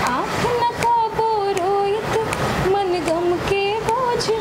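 A woman singing unaccompanied, holding long notes with ornamented bends in pitch, in two phrases with a short break in the middle.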